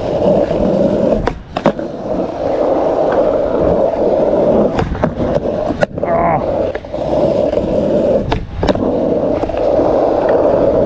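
Skateboard wheels rolling over rough asphalt, a steady gritty rumble, while the rider pushes along. A handful of sharp clacks are scattered through it.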